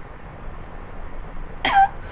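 A person's single short cough near the end, after a stretch of quiet room tone.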